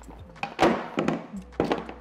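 Cardboard scraping and rustling, loudest about half a second in, with a few sharp knocks, as a tightly packed phone charger is forced out of its cardboard box compartment.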